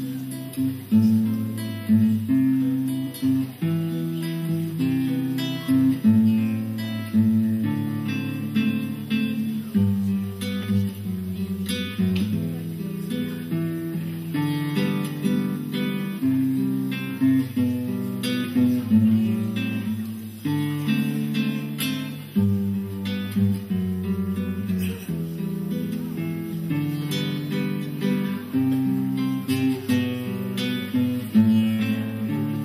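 Solo classical guitar played live, a run of plucked notes and chords, each ringing out after it is struck.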